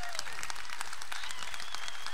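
Audience applauding steadily, a dense run of many hands clapping.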